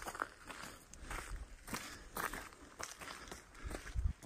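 Footsteps on a gravel path, about two steps a second.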